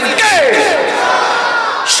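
Loud, drawn-out vocal cry over the loudspeakers that slides down in pitch and is then held, with many voices of a crowd in it.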